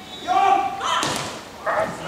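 Beach volleyball rally: short shouted calls from the players and the thud of the ball being struck about a second in.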